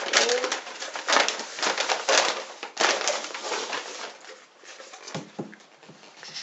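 Rustling and crinkling of a padded shipping envelope as a boxed glass is pulled out of it, in irregular bursts that thin out after a few seconds, then two soft knocks as the cardboard box is set down on the table.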